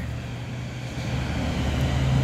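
Low, steady engine rumble of a motor vehicle close by, growing slowly louder.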